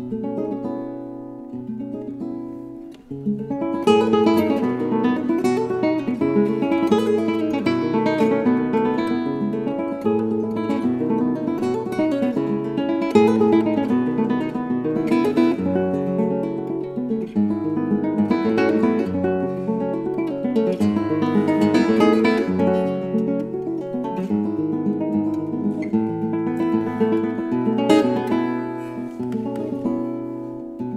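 Solo nylon-string Spanish guitar: a low chord rings for about three seconds, then a fast, dense passage of plucked notes and strummed chords with strong accents.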